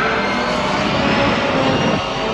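A loud, steady rushing drone from a horror-film trailer's soundtrack, dense and engine-like with held tones mixed in.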